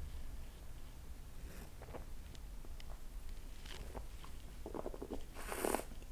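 Faint mouth sounds of a man sipping and tasting beer from a glass: small swallowing and lip noises, with a short breathy sound near the end.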